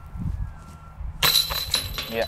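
A putted disc strikes a disc golf basket's metal chains about a second in: a sudden jangling metallic clatter that rings on briefly.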